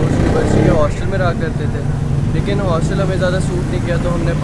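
A young man talking, over a steady low background rumble.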